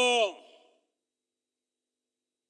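A man's speaking voice ending a drawn-out word that falls in pitch and fades, then dead silence for over a second.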